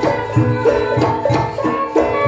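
Javanese gamelan ensemble playing, layered held metallic tones that step between pitches, with low kendang drum strokes driving the rhythm.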